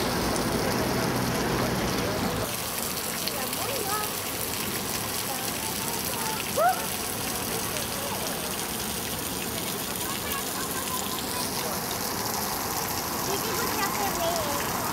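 Water of a stone fountain splashing steadily into its basin, with a short rising chirp about six and a half seconds in.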